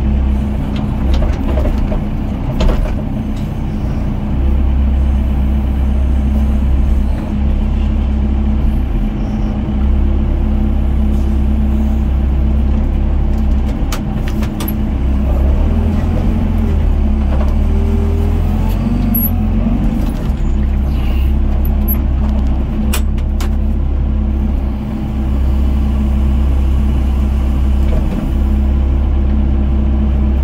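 Doosan DX55 mini excavator's diesel engine running steadily, heard from the operator's cab, its low note shifting several times as the hydraulic arm and bucket work. A few sharp knocks come from the bucket in the rubble, the clearest about halfway through and again near the three-quarter mark.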